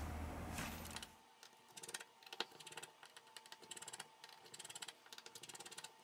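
Faint, quick, irregular small clicks and ticks of hand tools working on a phone. They follow a louder steady hiss that cuts off about a second in.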